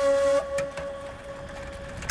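Background score: a single held flute note that drops to a softer level about half a second in and lingers faintly, with a few faint clicks under it.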